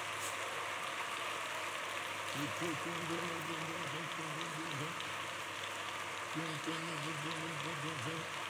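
A large congregation clapping steadily, a continuous even patter of many hands.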